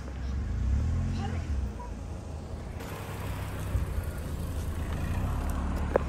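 Outdoor car park ambience: a steady low rumble, louder for about the first second and a half, with faint voices of people.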